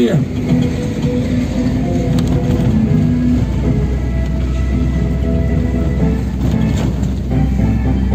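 Music with long held notes that shift in pitch every second or two, over the low steady running of a vehicle's engine.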